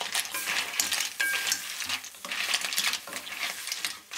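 Wooden spatula stirring Manila clams, basil and chili in a stainless steel skillet: uneven scraping with clams clicking against the pan, over a light sizzle from the hot pan, with a short high squeak about a second in.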